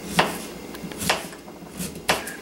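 Kitchen knife slicing through a raw peeled sweet potato onto a cutting board: three cuts, about a second apart.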